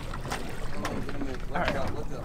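Steady wind and water noise on a small boat during a fish landing, with a few light clicks. A brief voice comes in near the end.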